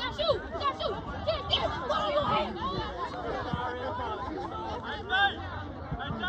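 Sideline crowd chatter: several people talking over one another at once, with a few louder calls standing out.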